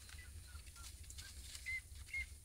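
Faint, short bird chirps, a few single high notes mostly in the second half, over a low steady rumble.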